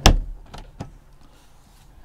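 Wooden under-seat storage lid in a motorhome lounge dropping shut with a loud thump, followed by two lighter knocks.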